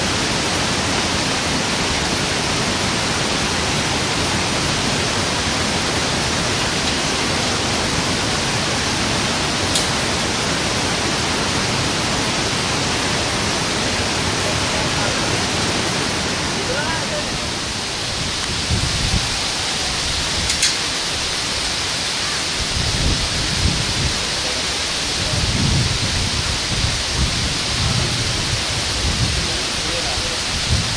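Steady loud rushing noise, with gusts of wind buffeting the microphone in low rumbles from about 18 seconds in.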